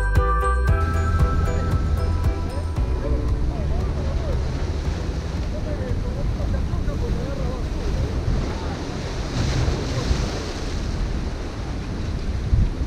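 Sea surf washing and breaking against the boulders of a rock jetty, with wind buffeting the microphone; a stronger wash comes about ten seconds in. Background music fades out in the first second or two.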